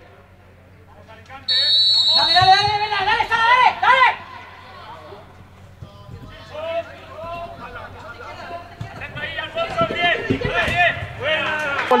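A referee's whistle blows one long, steady blast about a second and a half in, signalling kick-off, with loud shouting voices over it. After that, fainter voices call out across the pitch.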